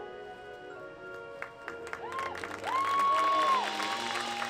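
A held chord from the marching band's brass and winds fades away, then spectators in the stands clap and cheer. Loud, high whoops rise, hold and fall in the second half.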